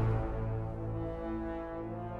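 Orchestral film score: a loud full-orchestra passage dies away at the start, leaving soft, sustained low brass chords held steadily.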